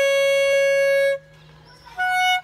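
Solo alto saxophone holding one long, steady note that ends about a second in, followed by a short rest before the next note of a pasillo melody begins at the very end.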